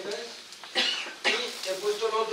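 A person coughing twice, in two short harsh bursts about half a second apart, with a man's speech just before and after.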